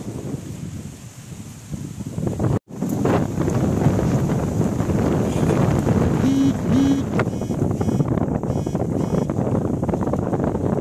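Wind buffeting the microphone, a loud rough rumbling noise that cuts out for an instant a little over two seconds in and then carries on. Two short, steady pitched notes sound a little past the middle.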